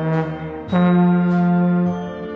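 Trombone playing long held notes: one note sounding, then under a second in a new, slightly higher and louder note held for more than a second before it eases off near the end.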